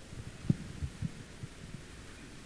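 A few soft, low knocks at the lectern as the Gospel book and microphone are handled, the first, about half a second in, the loudest, then four lighter ones over the next second and a quarter.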